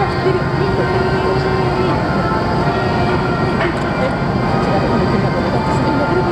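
Steady low drone of a berthed passenger-cargo ship's diesel machinery, made of several held tones that do not change, with people's voices mixed in.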